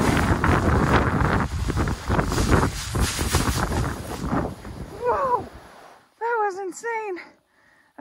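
Loud rushing noise of a board sliding fast down a steep sand dune, with wind buffeting the microphone and sand spraying. It dies away about five seconds in as the board comes to a stop, and is followed by a few short wordless vocal exclamations.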